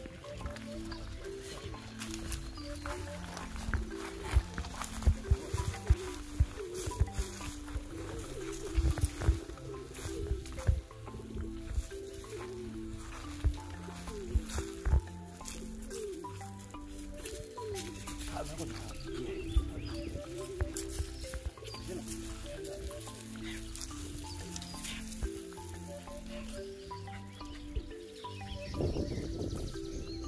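Background music: a repeating melody of steady stepped notes. Over it come scattered sharp cracks and knocks, most of them in the first half.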